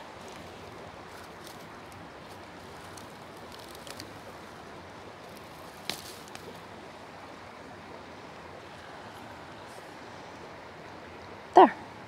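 An ostrich fern fiddlehead stem snapped off by hand: one sharp snap about six seconds in, with a few faint rustling ticks before it. Under it runs a steady, faint outdoor rush.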